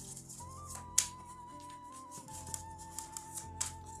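Soft background music with a slow, held melody, over which a tarot deck is shuffled by hand: light clicks and card snaps, the sharpest about a second in.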